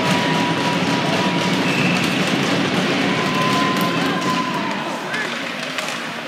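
Ice-rink crowd ambience: indistinct chatter from the stands with music playing in the background, easing off a little near the end.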